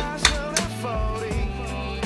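Background music: a song with a wavering vocal line over held bass notes and a drum beat.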